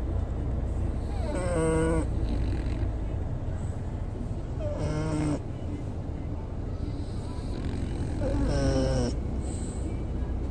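French bulldog snoring in its sleep: three long, pitched snores, each under a second, about three and a half seconds apart, over a steady low rumble.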